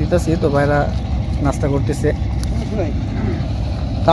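A steady low rumble with short snatches of people talking over it.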